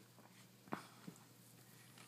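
Near silence: room tone, broken by a short soft click a little under a second in and a fainter one shortly after.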